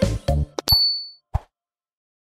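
The last notes of a children's song cut off, then a short bright ding chime, the cartoon sound effect for the subscribe bell being clicked, followed by one more short hit.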